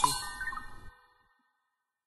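A bright chime struck once, ringing at several pitches and fading, then cut off abruptly about a second in, leaving dead silence.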